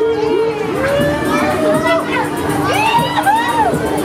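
Riders on a Fabbri Kamikaze 3 pendulum ride screaming and shouting as the arm swings, many short rising-and-falling yells overlapping, thickest in the middle. Underneath runs a steady held tone with background music.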